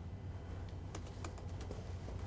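Laptop keyboard being typed on: a run of faint, quick key clicks.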